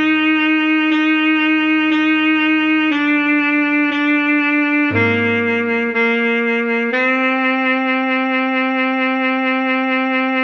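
Alto saxophone playing a slow melody, about one note a second: three notes on one pitch, two a step lower, two lower still, then a note held from about seven seconds in. A low accompaniment note sounds under it and stops about halfway through.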